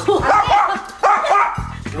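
Small pet dog barking angrily in a quick run of sharp yaps during the first second, then falling quiet, over background music. The dog is guarding a person lying down.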